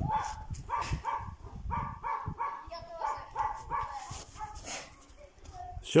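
A dog barking over and over, about three short barks a second, growing fainter after about four seconds.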